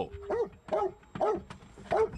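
Police dog whining in short, rising-and-falling yelping cries, four or five in quick succession, inside the car.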